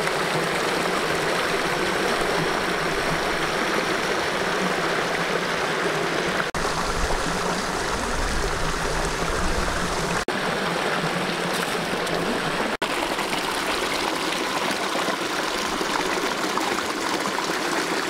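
Stream water rushing over rocks: a steady, loud rush that dips out for an instant three times.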